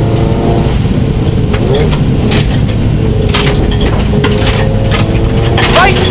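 In-cabin sound of a Subaru STI rally car's turbocharged flat-four engine on a gravel road, its note dropping away as the car brakes for a corner and returning steady about halfway through. Continuous tyre and road rumble, with several sharp knocks of loose gravel striking the underbody.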